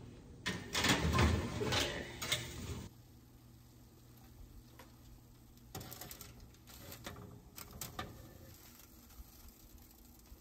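A kitchen oven door being pulled open and the rack slid out, a louder clattering stretch of about two seconds near the start. Then, more quietly, aluminium foil crinkling and metal tongs clicking against the tray, over a low steady hum.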